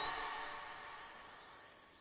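The tail of a radio station's logo jingle: the music fades away while a thin, high electronic tone glides steadily upward, dying out at the end.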